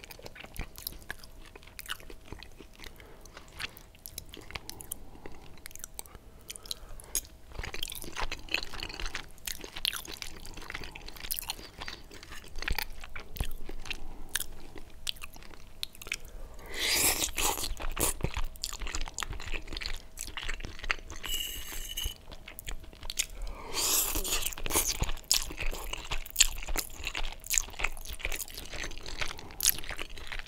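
Close-miked chewing of cheesy spaghetti bolognese: a run of small wet mouth clicks. There are two louder, longer bursts, about halfway through and again a little later, as fresh forkfuls of spaghetti go into the mouth.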